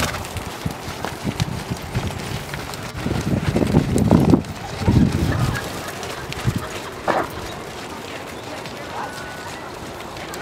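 Hooves of several ridden horses thudding dully on soft arena sand as they trot past, heaviest a few seconds in.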